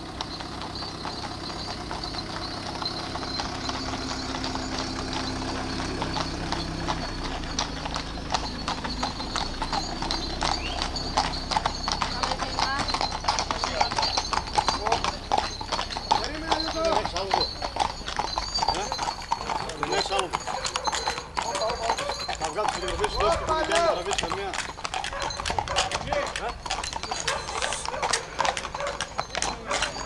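Hooves of a group of walking horses clip-clopping on a paved road, the irregular hoofbeats growing denser and louder. A steady low engine hum fades out in the first few seconds, and people's voices are heard among the horses in the middle of the stretch.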